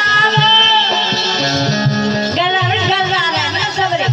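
A woman singing a Hindi folk song over harmonium accompaniment. About a second and a half in, the voice breaks off while the harmonium holds a few steady notes, then the singing comes back in.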